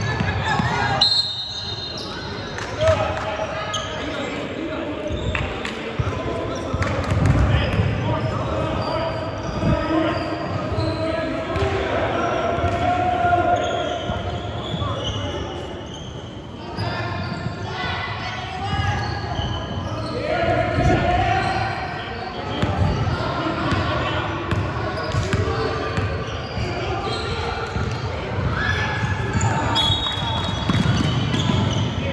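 A basketball bouncing on a hardwood gym floor, with indistinct shouting and chatter from players and spectators, echoing in a large hall.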